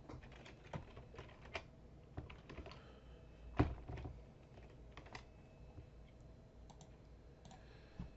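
Typing on a computer keyboard: a scattering of faint, separate key clicks, with one louder click about three and a half seconds in.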